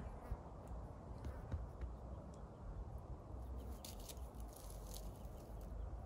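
Quiet forest ambience: a faint, steady low rumble with soft scattered clicks and rustles from dogs nibbling at the grass and pine litter.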